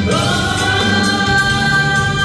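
A man singing a long held note through a microphone and PA, over backing music. The note slides up just after it starts, then holds steady.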